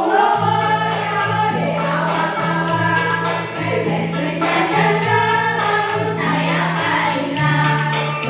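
A group of schoolchildren singing together over recorded musical accompaniment with held bass notes, played through a portable loudspeaker.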